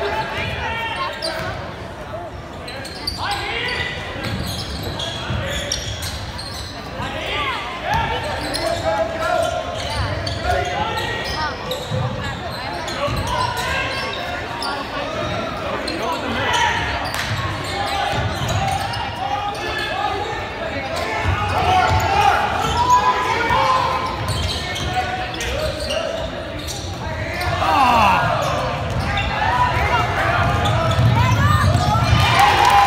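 A basketball being dribbled and bounced on a hardwood gym floor during play, the bounces echoing in the large gym, amid players' and spectators' voices.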